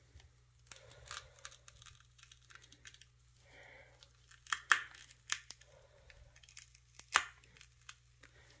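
An old, partly decomposed mango seed husk being torn open by gloved fingers: faint tearing and crackling of the fibrous husk, with a few sharper cracks about halfway through and again near the end.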